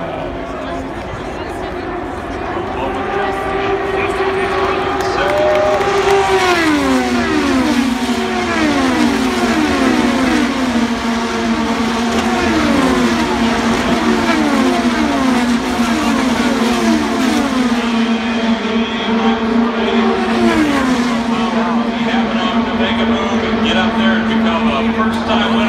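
IndyCars' twin-turbo V6 engines passing at racing speed one after another, each engine note dropping in pitch as the car goes by. The sound builds over the first few seconds, then a long string of passes follows for about fifteen seconds.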